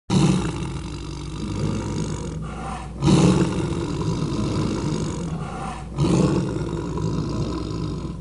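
Tiger roar sound effect: three roars about three seconds apart, each loudest at its start and then trailing off into a growl.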